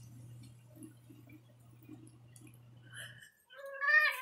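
Electrolux front-load washing machine running: a steady low hum with soft, evenly repeating swishes of the tumbling drum, which cuts off about three seconds in. Near the end comes a short, louder rising call, a meow from the Siamese cat.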